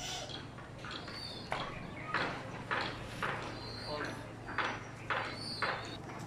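Pigeons pecking grain from a feed plate and bowls: a run of about eight sharp taps, roughly two a second, starting about a second and a half in.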